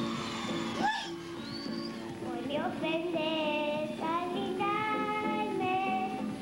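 A little girl's singing voice, about four and a half years old, from an old recording with musical accompaniment; held notes carry vibrato, with a quick upward slide about a second in.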